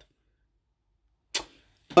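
Near silence, broken about one and a half seconds in by one short, sharp intake of breath from a man, who starts speaking in French just before the end.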